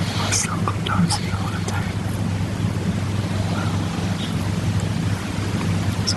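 Hushed, whispered conversation between people lying in bed, over a steady low electrical or ventilation hum.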